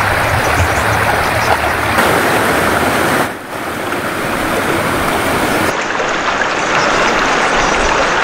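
Floodwater flowing across a road, a steady loud rushing noise, with a brief dip and change of tone a few seconds in where the footage cuts between shots.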